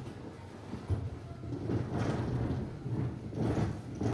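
Stage scenery being moved across a wooden stage floor: a low rolling rumble with scattered knocks of metal frames and platforms.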